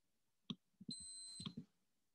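Faint clicks, a few of them, with a short high electronic beep of about half a second about a second in.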